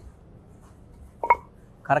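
A single short knock with a brief ring a little over a second in, as a long wooden pestle is set down on a stone grinding slab, over quiet room tone; a man starts speaking near the end.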